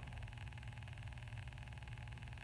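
Faint steady low hum with an even hiss: the background room tone of a small room, with no other sound.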